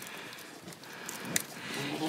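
Side cutters snipping through an old goat collar: a sharp click at the start and another about a second and a half in, over a quiet background.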